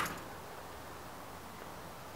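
Quiet, even background hiss with a single sharp click at the very start.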